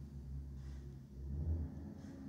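A low rumble that eases off about a second and a half in.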